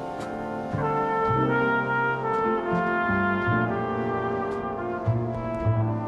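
Jazz big band with a flugelhorn out front: horn notes held over a moving bass line, with light cymbal strokes from the drums.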